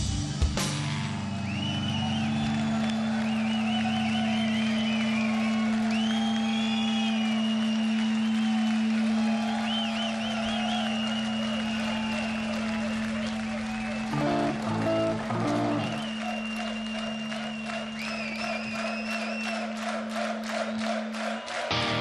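A rock band's low amplified note rings on steadily while a festival crowd cheers, whistles and claps. The held note stops shortly before the end, the clapping thickens over the second half, and the full band comes crashing back in right at the end.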